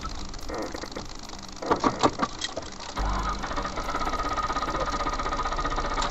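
A few sharp clicks, then from about three seconds in a car engine being turned over by its starter: a steady, rapid rhythmic churning with a faint steady high tone over it.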